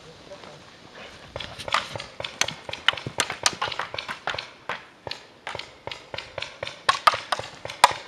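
Paintball markers firing during a game: a fast, irregular string of sharp pops, several a second, beginning about a second in.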